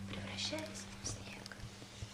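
A nylon-string classical guitar chord fading as it rings out, with soft breathy sounds about half a second in and again near a second and a half.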